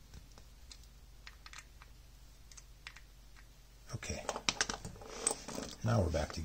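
Small sharp clicks of a screwdriver and a hard plastic battery-pack case being handled: a few faint, scattered ticks at first, then from about four seconds in a quick run of louder clicks and rattles as the pack is turned over and worked with the fingers.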